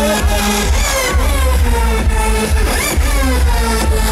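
Loud electronic dance music from a live DJ set over a large festival sound system: a heavy bass beat about twice a second with synth lines sliding down and up in pitch.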